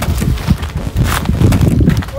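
Wind rumbling on the microphone, with irregular knocks and rustles.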